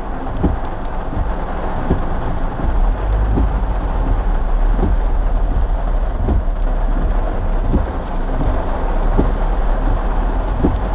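Rain falling on a car's roof and windows, heard from inside the moving car over a low steady road rumble, with irregular low knocks about once a second.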